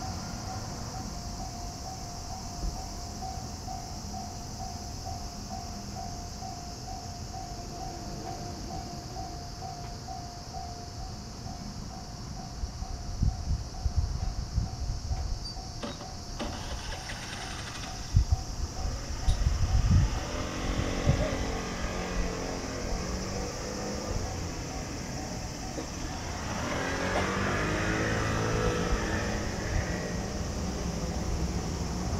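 Japanese level-crossing alarm ringing with a steady, rapidly repeating electronic tone through the first two-thirds. After that, the rising and falling whine and rumble of a passing electric train take over and grow louder near the end.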